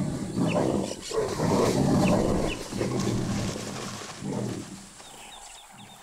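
A mating pair of jaguars growling and snarling in several rough bouts, the cats' coarse throaty calls rising and falling, then fading away over the last second or so.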